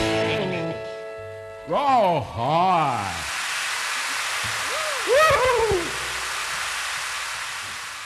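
A rock band's last chord ringing out and fading, then a crowd applauding with loud rising-and-falling "woo" whoops, twice near the start of the applause and once more in the middle, the applause slowly dying away.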